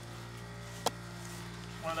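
A 1996 Jeep Cherokee XJ idling with its hood open, a steady low hum, with one sharp click about a second in. The engine is running hot and pushing out coolant, probably with air not yet burped from the cooling system.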